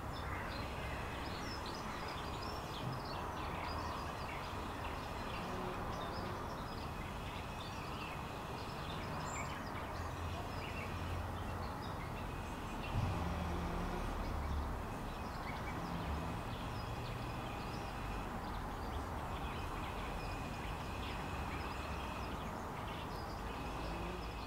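Garden ambience: a steady background hiss and low rumble with faint, scattered bird chirps.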